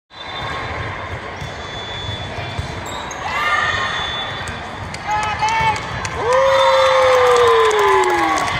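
Indoor volleyball rally in a gym hall: ball hits and court noise with players' short calls. About six seconds in, a long, loud shout falls slowly in pitch as one team comes together on court, a cheer after winning the point.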